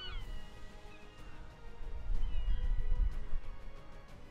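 Background music with held tones, over which a short animal cry falls in pitch right at the start, and a second, weaker cry comes about two seconds in.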